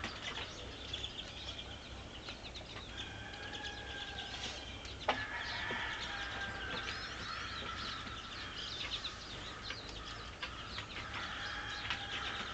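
Small finches, pine siskins and American goldfinches, twittering at a seed feeder: many quick, high chirps throughout. Through the middle come several longer, drawn-out calls from an unseen bird, and a single sharp click about five seconds in.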